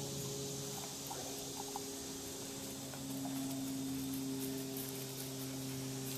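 Steady outdoor background: a low, even hum under a faint high hiss, with a few soft clicks.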